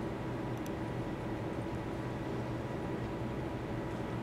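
Steady low electrical hum with a faint hiss, the background room tone of a quiet workbench, with a faint tick or two about half a second in.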